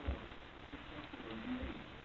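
A calico cat making a few faint, low trilling coos, with a soft thump just after the start.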